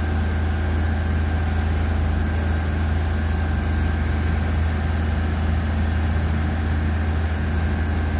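Heavy machinery engine idling steadily, a constant low hum with no change in speed.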